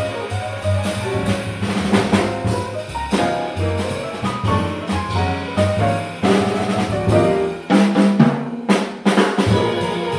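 Jazz piano trio playing together: grand piano, upright bass and drum kit.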